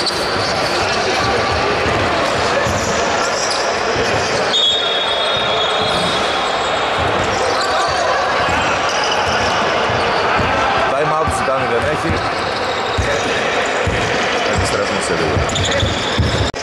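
Basketball bouncing on a hardwood gym floor, with voices echoing around a large hall. A steady high tone sounds for about two seconds a few seconds in.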